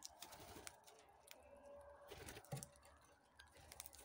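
Faint, scattered clicks and taps from eastern rosellas at a hand-held cup of seeds, with brief wing flutters as birds land and take off.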